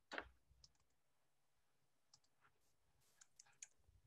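Near silence broken by a few faint computer mouse clicks, most of them near the end.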